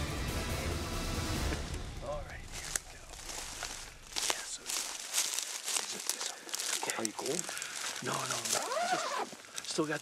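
Background music with a deep bass plays for the first couple of seconds and fades out. Then come people's voices, with rustling, crunching footsteps through dry grass.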